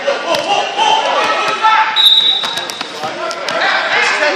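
Wrestling on a gym mat: shoes squeaking and bodies knocking against the mat, with voices calling out, all echoing in a large hall. A short high squeal comes about halfway through.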